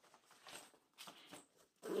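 Nylon Case Logic camera backpack being folded shut by hand: faint fabric rustling and brushing as the padded lid is swung over and pressed down.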